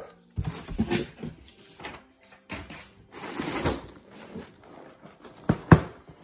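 Cardboard shipping box and its packing being handled by hand: irregular rustling and scraping of paper, plastic and cardboard, with two sharp knocks near the end as a boxed set is picked up.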